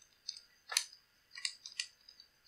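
Four short, quiet clicks of a computer mouse, spaced unevenly over about two seconds.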